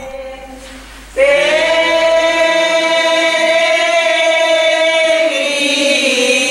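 Congregation of mostly women's voices singing an alabanza, a hymn of praise to the Virgin. The voices come in strongly about a second in on one long held note, then move to a new note near the end.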